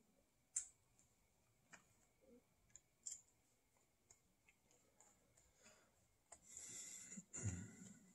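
Faint clicks and small knocks of a screwdriver working a small screw into a plastic bracket on a brass ball valve, then a short scraping, rubbing stretch near the end as the parts are handled.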